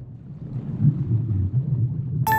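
Underwater ambience sound effect: a low, churning rumble of water that swells and ebbs, without any musical notes.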